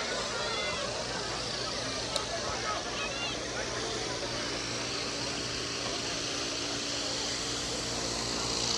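Outdoor crowd hushed for a moment of silence: a few faint murmured voices over steady background noise, with one sharp click about two seconds in and a low steady hum coming in about halfway through.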